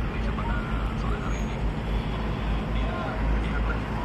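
Outdoor ambience: indistinct voices of people nearby over a steady low rumble.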